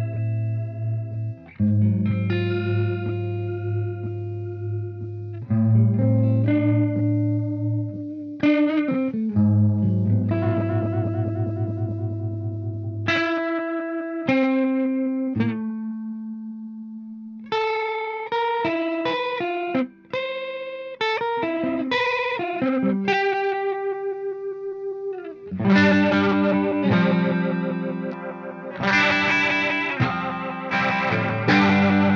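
Two electric guitars, one a semi-hollow, played through a Chase Bliss Warped Vinyl HiFi chorus/vibrato pedal set to a deep modulation. The held chords and notes wobble in pitch, which sounds crazy and wacky. The playing thins to a single held note partway through, then comes back denser and louder near the end.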